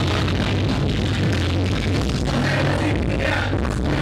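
Loud live concert music over a PA, heard from within the crowd, with a strong steady bass line.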